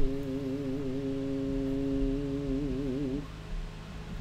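A man humming one long held note that wavers slightly in pitch, stopping a little after three seconds in.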